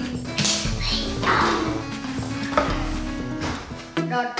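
Plastic rustling and crinkling in a few short bursts from rummaging inside a giant plastic-lined surprise egg, over background music.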